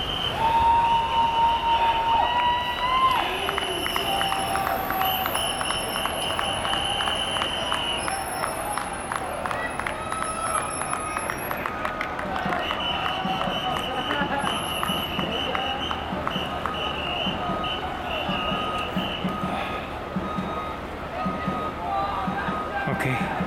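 City street ambience: indistinct voices and traffic noise, with a high steady tone that breaks off and starts again, then pulses on and off in the second half.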